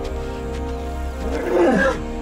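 Male lion giving a short growl about a second and a half in, over steady background music.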